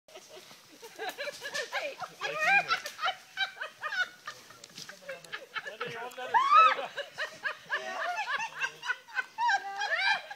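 Several women's voices chattering and laughing, the words unclear, with a loud, high rising cry about six and a half seconds in.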